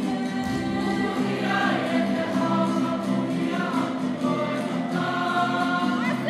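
Māori kapa haka group singing together, many voices in harmony on held notes that step through a melody.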